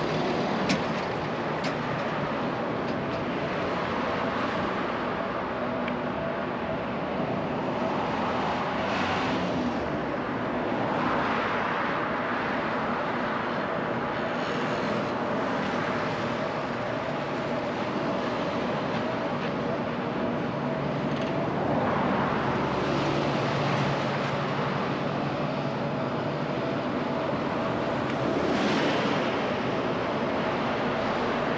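Road traffic heard from a moving bicycle: a continuous rush of cars, vans and trucks, swelling louder several times as vehicles pass close by. A single sharp click sounds just under a second in.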